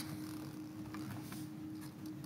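Quiet hearing-room tone: a steady low electrical hum with a couple of faint clicks.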